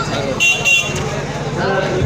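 Two short horn toots, close together about half a second in, over the steady chatter of a dense street crowd.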